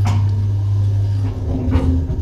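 Elevator's centre-opening doors sliding shut, with a loud, steady low hum throughout and a bump as the doors meet near the end.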